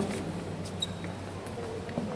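Pause between speakers in a hall: steady low room noise with a faint hum and a few light clicks and rustles.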